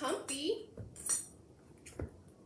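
Footsteps in lace-up calf-hair combat boots: several sharp clicks and clinks with short rising squeaks in the first second or so, then a single heavier step near the end.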